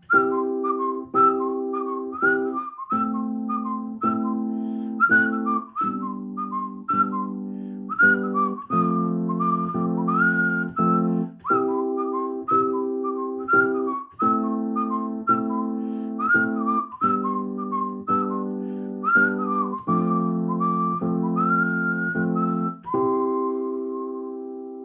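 A whistled melody, sliding into its notes, over keyboard chords that change roughly every second or two. Near the end the playing settles on one held chord with a last long whistled note, and the sound fades.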